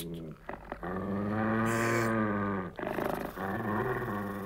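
The wolf's loud snoring, performed as deep growling rasps: one long snore about a second in, and another starting near the end.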